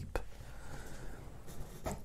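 A pause in a man's slow, quiet monologue: faint room noise with a soft click just after it begins and another just before he speaks again.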